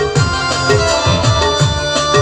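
Instrumental saluang dangdut music: a steady drum beat of low strokes that bend in pitch, under held melody notes.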